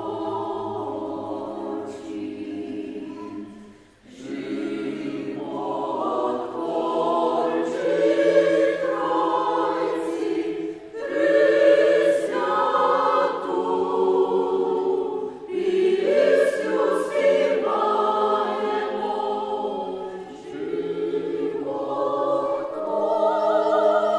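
A mixed choir of women's and men's voices sings a Ukrainian song in harmony. The phrases are separated by short breaths, with a near-pause about four seconds in.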